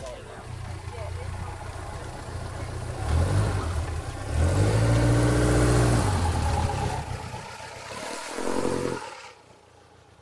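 Seven-style kit car's engine revving as the car pulls away and drives past, rising in pitch twice and loudest about halfway through. It then dies away, with one last short blip of throttle near the end.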